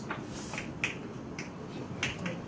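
Chalk tapping and scraping on a blackboard while writing: a handful of short, sharp clicks spread unevenly over the two seconds, above a steady low room noise.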